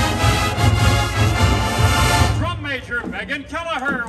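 A full marching band's brass section, sousaphones included, holds a loud sustained fanfare chord that cuts off together a little over two seconds in. An announcer's voice over public-address loudspeakers follows.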